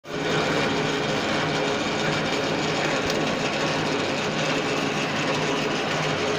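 Metal-turning lathe running with its chuck spinning: a steady mechanical hum carrying a few constant tones.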